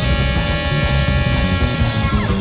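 Live jazz quartet: a horn holds one long high note over walking bass and drum kit, the note stopping just before the end.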